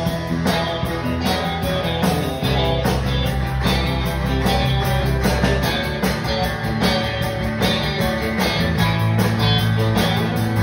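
Live country band playing an instrumental passage with no singing: a drum kit keeps a steady beat under electric bass and electric and acoustic guitars.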